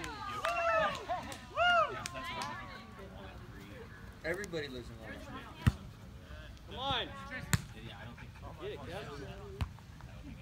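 Soccer players shouting calls across the field, with two sharp thuds of a soccer ball being kicked, the first about halfway through and the second about two seconds later.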